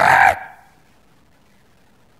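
A man imitating a traffic policeman's whistle with his mouth: one short, loud blast lasting about a third of a second.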